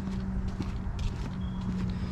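Footsteps on a concrete sidewalk, a few light steps, over a steady low hum and rumble.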